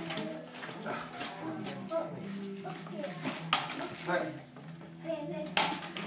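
Cardboard toy packaging being handled and worked open by hand, with two sharp clicks, one about halfway through and one near the end, under faint voices in the room. A throat is cleared near the end.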